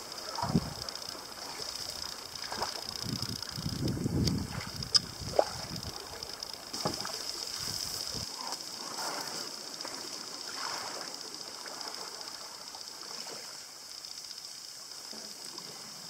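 Fibreglass mokoro being poled through a reed channel: reeds brushing and scraping along the canoe, with a few knocks in the first half, then water lapping and dripping around the hull and pole. A steady high-pitched hum runs underneath.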